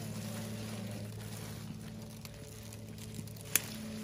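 Hand clippers snipping a persimmon stem once, a single sharp click near the end, amid faint rustling of leaves and branches. A steady low hum runs underneath.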